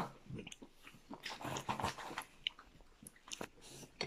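Faint eating sounds at a meal: chewing, with scattered light clicks of forks on plates.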